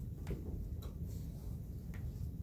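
A few light, sharp clicks at irregular intervals over a steady low hum of room noise.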